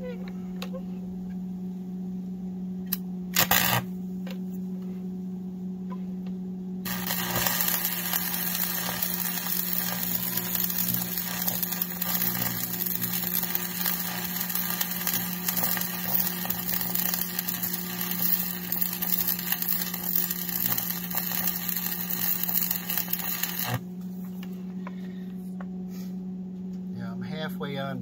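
Stick (arc) welding with a 6013 electrode: the arc crackles steadily for about seventeen seconds, starting about seven seconds in and cutting off sharply. A steady low hum runs underneath, and there is a brief loud burst about three and a half seconds in.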